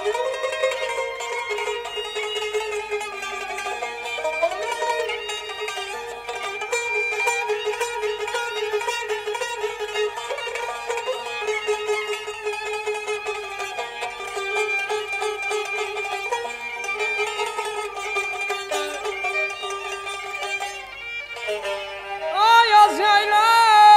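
Instrumental interlude of Azerbaijani mugham in the segah mode: a plucked tar plays melodic runs with a bowed kamancha sustaining notes beneath it.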